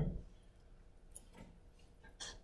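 A few faint, short ticks and clicks in a quiet room, two of them close together just past the middle. At the very start, the tail of a brief falling vocal sound dies away.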